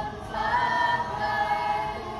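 Mixed choir of girls' and boys' voices singing in parts, holding sustained notes; a louder phrase enters about half a second in.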